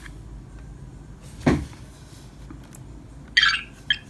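Handling noise from a hand-held plastic tricorder toy: one sharp clack about a second and a half in, then a short higher-pitched rasp and a click near the end.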